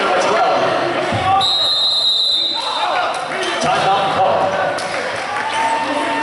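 Basketball bouncing on a hardwood gym floor amid crowd chatter, with a referee's whistle blown once for about a second, a little over a second in.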